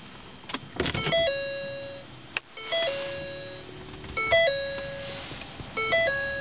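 A couple of clicks, then the 2014 Ford Fusion Energi's dashboard chime sounding four times, about every second and a half. Each chime is a short higher note dropping to a held lower one, as the car is switched on with its push-button start.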